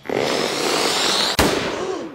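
Cartoon firework-style blast sound effect: a loud fizzing, hissing rush, then a sharp crack about one and a half seconds in, dying away.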